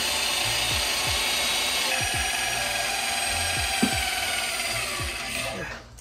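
Large corded Harbor Freight drill boring through the steel winch-mount plate of a bumper, running steadily under load with a whine. Its tone shifts about two seconds in, and it winds down shortly before the end.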